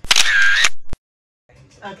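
Camera-shutter snapshot sound effect added in the edit: a loud burst about two-thirds of a second long, then a single sharp click, followed by dead silence for about half a second.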